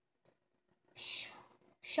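A child reading aloud, sounding out a word: a pause, then a whispered, drawn-out 'sh' about a second in, and the word 'shop' spoken just before the end.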